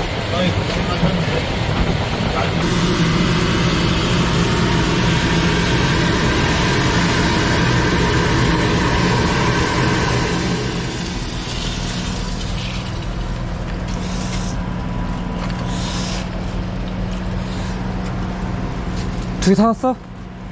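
High-pressure drain jetter running steadily, its pump motor holding a low hum. A loud rush of water-jet spray rises about three seconds in and eases back at about eleven seconds.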